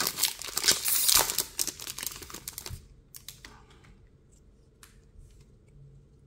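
Foil wrapper of a Pokémon TCG booster pack crinkling and tearing as it is ripped open by hand, loud and dense for the first couple of seconds, then dropping to a few faint rustles and ticks.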